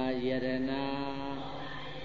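A man's voice chanting a Buddhist verse, holding one long, steady note that fades out near the end.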